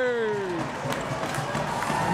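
The tail of the play-by-play announcer's long, drawn-out goal call, falling steadily in pitch and fading out under a second in, leaves arena crowd noise and cheering for the rest.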